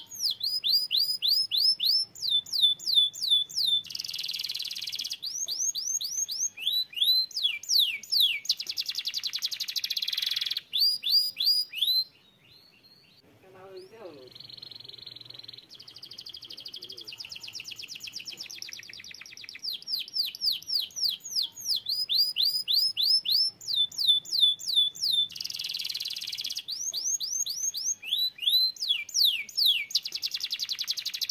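Domestic canary singing: runs of fast, repeated downward-sweeping notes alternating with buzzy trills, with a brief break about twelve seconds in before the song resumes.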